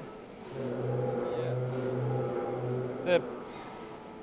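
A man's voice drawn out in a hesitant, steady hum lasting about two and a half seconds and broken briefly a few times, then a short word about three seconds in.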